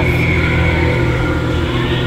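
A steady low rumbling hum with a few faint held tones above it.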